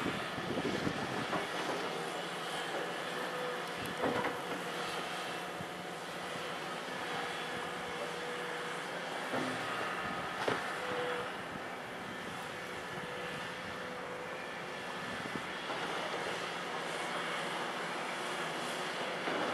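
Volvo EC700B LC crawler excavator's diesel engine running steadily under load through a dig-and-lift cycle in broken limestone. A few sharp knocks of bucket and rock come through, the clearest about four seconds in and again about ten seconds in.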